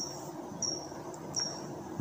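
A cricket chirping: three short high chirps, evenly spaced about 0.7 seconds apart.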